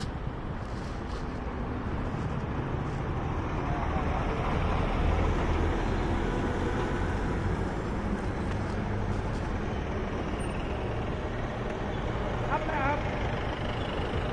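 Road traffic: motor vehicles running on the road, a steady low engine rumble that swells around the middle.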